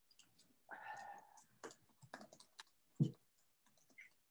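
Faint clicking and tapping of a computer keyboard and mouse at a desk, with a brief voice sound about a second in and a single low knock near the three-second mark.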